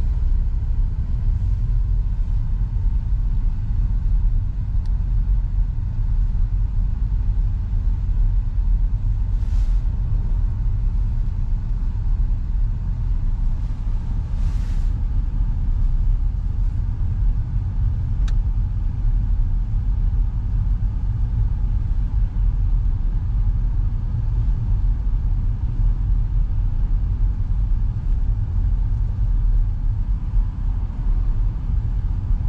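Steady low rumble of a car moving slowly, heard from inside the cabin. Two brief hissy rustles break in about ten and fifteen seconds in.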